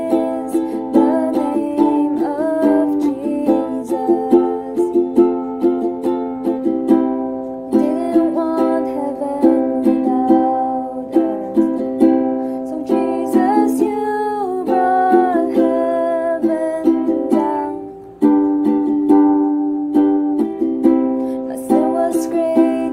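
Ukulele strummed in a steady rhythm with a woman singing along. The playing drops out briefly a few seconds before the end, then comes back in.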